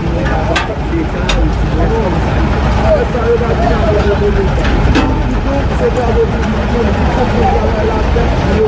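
People talking over the steady low running of heavy dump trucks' diesel engines, with a few sharp clicks.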